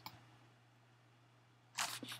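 A single computer mouse click at the very start, then a quiet stretch with only a faint steady electrical hum. A short breath comes near the end.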